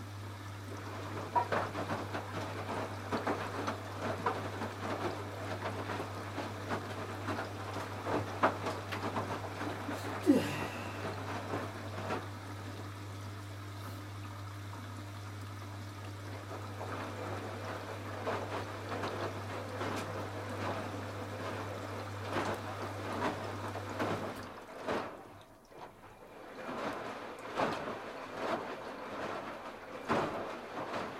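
Candy RapidO front-loading washing machine near the end of its 30-minute quick cycle: water sloshing and splashing as the drum turns with the laundry. Under it runs a steady low hum that stops about 24 seconds in.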